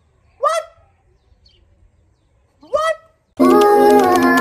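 Two short, high-pitched, nasal vocal cries from a person, about two seconds apart. Loud music starts abruptly just before the end.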